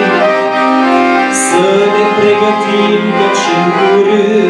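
Empire piano accordion playing a slow melody over held chords, with notes changing every second or so.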